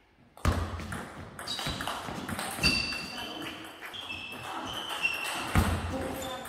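Table tennis rally in a large hall: the ball clicks off bats and table. Short high shoe squeaks and heavier thuds of footwork on the sports floor come in among the clicks. It starts about half a second in, after a near-quiet moment.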